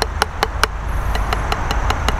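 Wooden drumsticks striking a rubber drum practice pad in an even stream of single strokes, about five or six a second, some noticeably softer than others.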